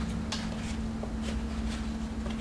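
Faint, scattered clicks and scrapes of a plastic electrical box being wiggled against the edges of its drywall opening, over a steady low hum.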